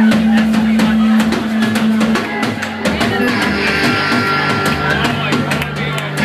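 Live rock band playing: drum kit with bass drum hits under electric guitar and bass guitar, a held low note dropping to a lower one about three seconds in.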